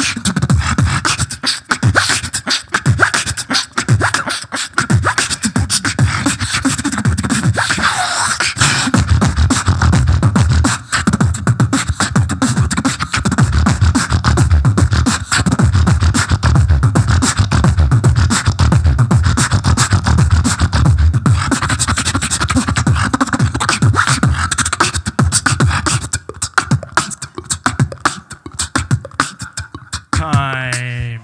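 Solo beatboxing into a handheld microphone: a dense, fast run of vocal kick, snare and click sounds over deep bass, with a brief pitched vocal glide about eight seconds in.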